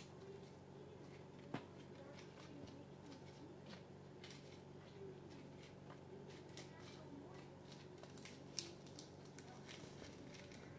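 Near silence in a kitchen, with faint handling sounds as washed plantain leaves are gathered and rolled on a wooden cutting board: a few light clicks and taps, the most distinct about a second and a half in and again near the end, over a low steady hum.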